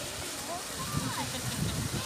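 Indistinct chatter of people's voices in the background over a steady outdoor hiss, with no single loud event.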